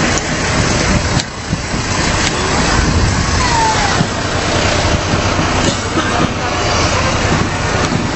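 Fire-brigade pumper truck driving slowly past close by, its engine running as a steady low rumble under street noise.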